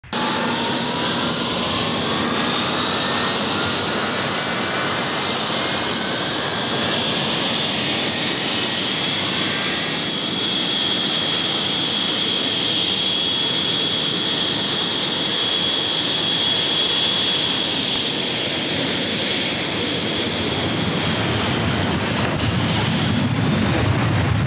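Super Étendard's jet engine running up to power: a high whine climbs over the first ten seconds, then holds steady over a loud, even rush.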